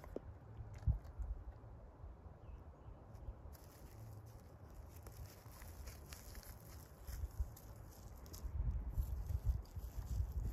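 Faint outdoor ambience as a dog moves close by through dry grass, with soft rustling and footfalls that pick up near the end.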